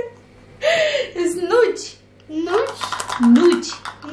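Voices of a young child and a woman talking, words that were not made out.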